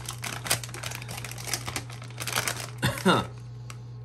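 Plastic potato-chip bag being pulled open and crinkled in the hands, a dense run of crackles for nearly three seconds. A brief vocal sound from the man follows a few seconds in.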